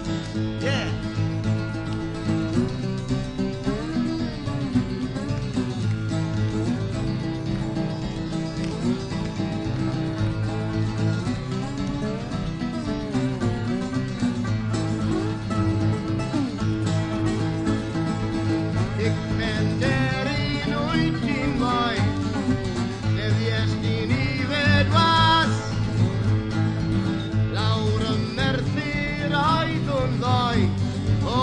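Live acoustic folk music led by guitar, with no words. About twenty seconds in, a higher gliding melody line comes forward and the playing gets a little louder.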